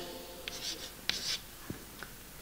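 Chalk writing on a chalkboard: a few short, faint scraping strokes in the first second and a half as numerals are written.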